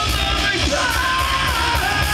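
Live death/thrash metal band playing: distorted electric guitar and bass over fast, dense drumming, with a harsh yelled vocal on top.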